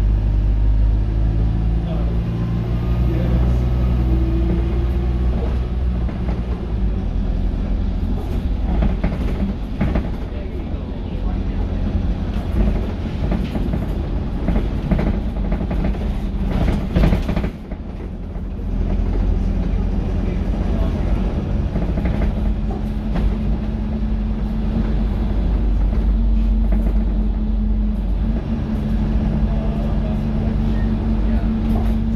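Dennis Dart SLF single-deck bus heard from inside the saloon while under way: the diesel engine runs steadily, with rattles and knocks from the body in the middle stretch. A little past halfway the engine briefly eases off, then pulls again with a steady note.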